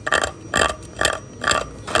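Steel hand chisel scraping into henna-dyed white Makrana marble, cutting out a cavity for inlay stones. About five short scraping strokes, roughly two a second.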